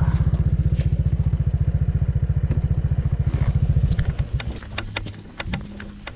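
Motorcycle engine running at low speed with an even, rapid low pulse, then dropping to a much quieter level about four seconds in. A few sharp ticks and crunches follow near the end.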